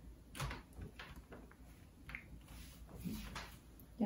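Plastic bottom cover of a Dell laptop being pressed back onto the chassis, giving a few soft clicks and light plastic knocks as it seats.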